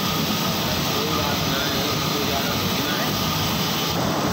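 Roll-fed printing press for paper-cup blanks running with a steady, dense mechanical noise.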